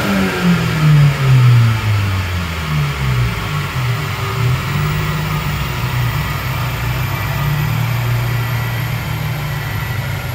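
Boosted car engine heard from inside the cabin as a full-throttle tuning pull ends: the revs fall sharply right at the start as the throttle is lifted, with a few bumps in the first second or two. The engine then runs on at a steady, slowly falling pitch while the car coasts and slows.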